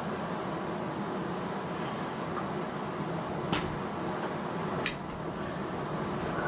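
Hatsan Striker 1000x .22 break-barrel air rifle being cocked: two sharp clicks a little over a second apart, the second the louder.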